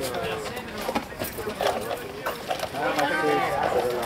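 People's voices talking and calling out, mostly unclear, with the loudest stretch near the end.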